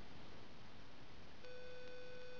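Steady faint hiss, then about one and a half seconds in a steady electronic beep tone starts and holds without a break.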